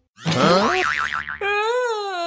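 Cartoon 'boing' spring sound effect with a wobbling, warbling pitch, followed about one and a half seconds in by a long held pitched note that rises and falls slightly, as the animated character springs up.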